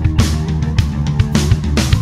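Instrumental passage of a rock song, with no vocals: guitar and bass held under a drum kit whose hits fall about twice a second.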